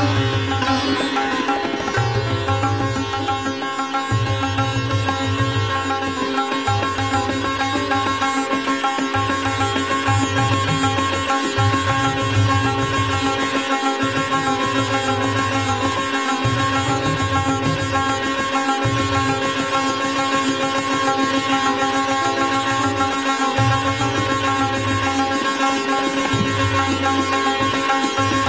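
Sitar playing a fast drut gat in Raag Puriya, set to teentaal, its strings ringing steadily. A low pulse repeats every second or two beneath it.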